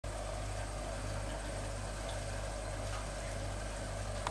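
Steady low mechanical hum with a light even hiss from the running equipment of a home-built continuous alcohol still.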